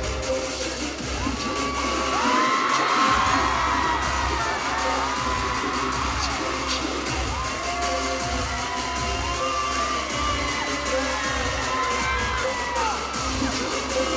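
A live K-pop song plays loud through the concert sound system with a heavy bass beat that drops out briefly about two and a half seconds in. Over it, many high voices of the crowd scream and cheer in overlapping rising and falling cries.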